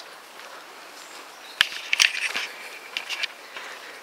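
Footsteps of someone walking across a garden, two soft steps heard about a second and a half and two seconds in, over quiet outdoor ambience.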